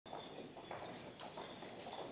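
Faint, irregular footsteps of folk dancers in boots walking on a stage floor, a few soft knocks per second.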